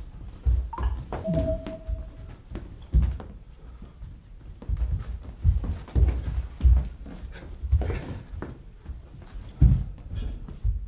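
Irregular thuds and knocks of a stage-fight rehearsal in a hall: feet and bodies landing on the floor as actors run the fight moves.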